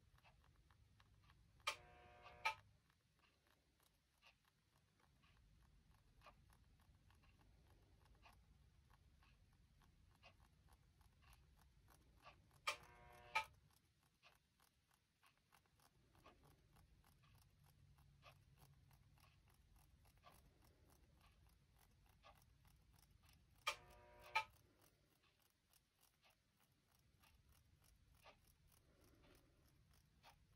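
Near silence broken three times, about ten seconds apart, by a pair of light taps with a short ring: a fingertip tapping a small metal mesh strainer to sift clear glass powder.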